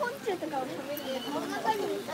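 Background voices: several people talking at once, overlapping.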